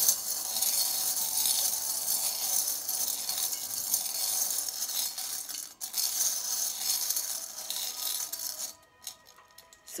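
A pile of small metal charms jingling and clinking as hands stir them around a glass bowl, over soft background music. The jingling stops about nine seconds in, leaving a few light clicks.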